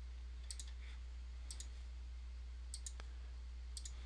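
Computer mouse clicking as keys are entered on an on-screen calculator: four faint double clicks (press and release) about a second apart, over a steady low electrical hum.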